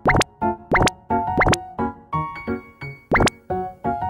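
Bouncy keyboard background music, with four quick rising 'pop' sound effects laid over it: two near the start, one about halfway through the first half, and one about three seconds in.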